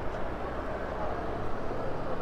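Honda Click 125i scooter's single-cylinder engine running as the scooter moves off, a steady low hum with road noise.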